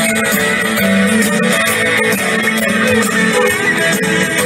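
Live soul band playing an instrumental stretch: guitar over a steady cymbal-driven beat, loud and unbroken, with no singing.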